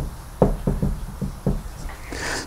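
Dry-erase marker writing on a whiteboard: a run of about eight short taps and scratches of the marker tip against the board over two seconds.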